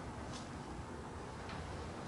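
Meeting-room tone with a steady low hum, and two faint ticks, one about a third of a second in and one about a second and a half in.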